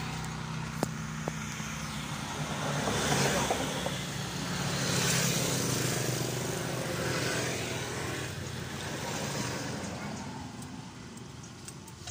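Road traffic: the noise of passing vehicles swells and fades several times, with a vehicle engine running steadily underneath until it dies away near the end.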